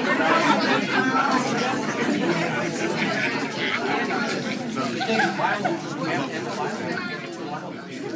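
Many people talking at once in indistinct, overlapping chatter that eases off a little towards the end.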